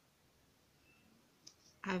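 Near silence: quiet room tone with one short, faint click about one and a half seconds in, then a woman's voice starts speaking near the end.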